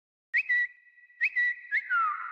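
Whistling: three short notes, each starting with a quick upward slide and then held, followed by a note that slides downward near the end.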